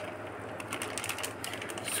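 Faint rustling and small irregular clicks of a plastic fish bag being handled in a bucket of water as the fish is let out of it.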